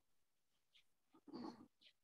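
Near silence over a video call, broken by one brief, faint sound about a second and a half in.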